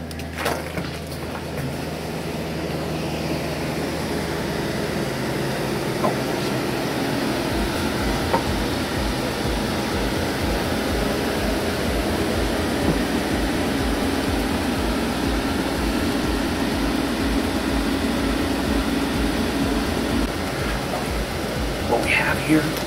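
A steady rumbling noise that swells over the first few seconds, with a low, even pulse repeating two or three times a second from several seconds in.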